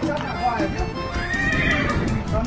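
A grey stallion whinnying, with a high arching call in the second half, and hooves clopping on pavement, all over music with a singing voice.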